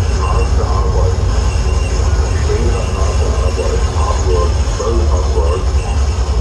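Live harsh noise from a table of chained effects pedals and a mixer: a loud, unbroken wall of distorted noise over a heavy low rumble.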